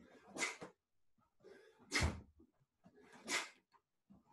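Repeated Taekwon-Do front snap kicks, three of them about a second and a half apart: each a sharp rush of noise from the dobok and a forceful breath, and on some a thud of a bare foot landing on the wooden floor.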